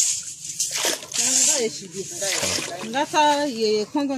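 Voices talking, with light splashing and sloshing of muddy water scooped from a hole in the sand with a metal bowl and poured into a plastic basin.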